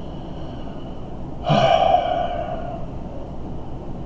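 A man's heavy sigh, a single long exhale starting about a second and a half in and fading away over about a second.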